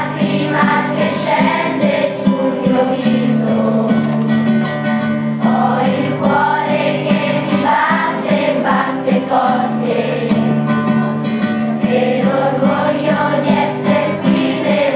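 A children's choir singing with musical accompaniment. Long, steady low notes sit under the voices.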